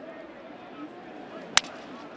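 A single sharp crack of a wooden baseball bat breaking as it meets a pitch, about three quarters of the way through.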